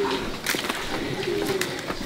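A bird's low cooing calls: two short hoots, one right at the start and another about a second and a half in, with a sharp click about half a second in.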